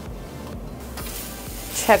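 Faint background music, then from about a second in a steady hiss of a tenderloin steak sizzling on a flat-top griddle.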